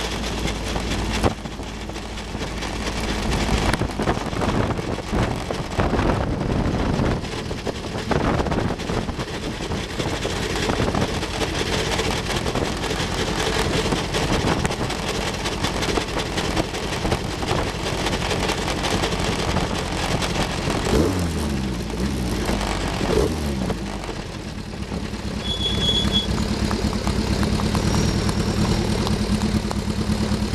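1960 Cooper T53 Lowline single-seater's engine running at low revs as the car rolls slowly, with a couple of brief rises and falls in revs about two-thirds of the way through, then settling into a steady idle as the car comes to a stop near the end.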